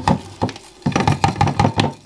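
Caustic soda (sodium hydroxide) granules being shaken out of an upturned plastic bottle into a glass jug of water: a run of sharp knocks and rattles, thickest in the second half.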